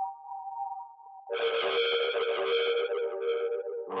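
Funk music led by a diatonic harmonica played through effects pedals. A thin held tone gives way about a second in to a dense, distorted sustained chord, and a fuller, lower chord comes in near the end.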